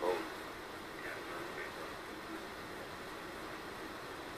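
Ham radio transceiver tuned to 40-metre lower sideband, putting out steady band-noise hiss between transmissions, with a weak, barely readable voice fading in and out.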